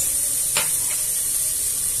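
Chopped onion and garlic sizzling in olive oil in an open pressure-cooker pot, a steady high hiss, with one light click about half a second in.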